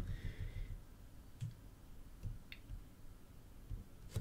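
Faint fingertip taps on a smartphone's glass touchscreen: a few sharp little clicks and soft knocks, irregularly spaced.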